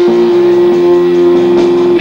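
Live rock band with electric guitar, bass and drums playing; one note is held steady throughout while the lower notes beneath it change twice.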